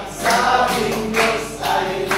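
A group of men singing a worship song together, accompanied by an acoustic guitar.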